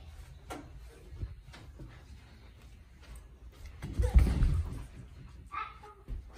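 A loud, low thump with a short rumble about four seconds in, after a few lighter knocks and scuffs.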